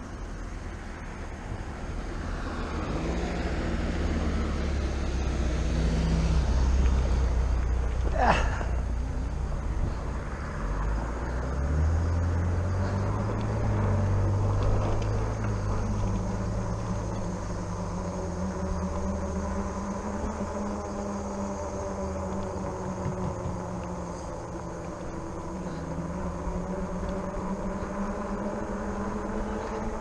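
Rad Power Bikes RadRover fat-tire e-bike riding along pavement: low wind rumble on the GoPro's microphone, with tyre and hub-motor noise and a faint steady whine. A short sharp sound comes about eight seconds in.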